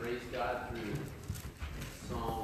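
A man speaking into a microphone, with a few light knocks in the second half.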